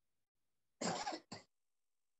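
A person clearing their throat in two short bursts, about a second in.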